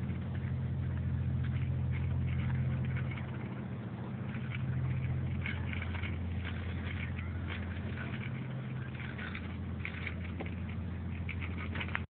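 A child's bicycle with training wheels rolling slowly over paving, with scattered light clicks and rattles, over a steady low hum.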